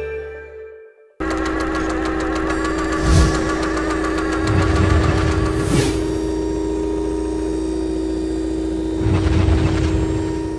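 Intro title music for a show: a logo sting fades out to a brief silence, then about a second in a new cue starts abruptly, a steady held tone over a fast ticking rhythm, with two swells near three and six seconds in.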